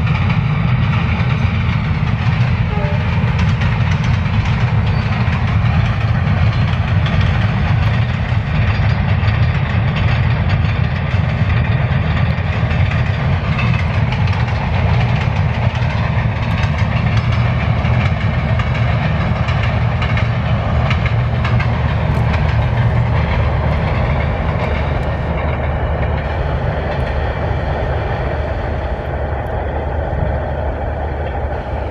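Diesel-hauled passenger train crossing a girder bridge: a steady heavy rumble of the locomotive and coaches rolling over the span, easing slightly near the end as the train moves off.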